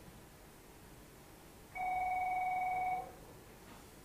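A single electronic telephone ring: one steady warbling tone lasting just over a second, starting a little under two seconds in.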